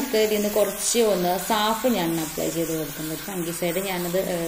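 A woman talking over a steady hiss of water spraying onto the snake plant's leaves.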